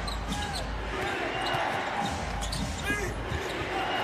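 Basketball dribbled on a hardwood court during live play, with scattered short strikes over the steady hum of a large hall.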